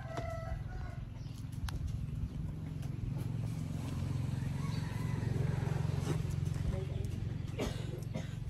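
A macaque grooming a man's hairy leg: faint picking and scratching clicks from its fingers in the leg hair, over a steady low rumble that swells in the middle.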